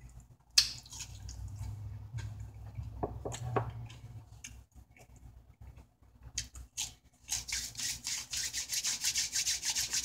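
A person chewing seasoned potato wedges close to the microphone: soft wet mouth sounds, then a fast, steady run of chewing noises over the last few seconds.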